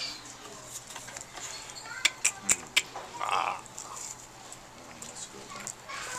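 Tableware clattering at a dining table: a quick run of about four sharp clicks, like chopsticks or dishes knocking, about two seconds in, over low murmur.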